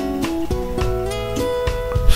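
Background music on acoustic guitar: a few quick strummed notes near the start, then notes left ringing.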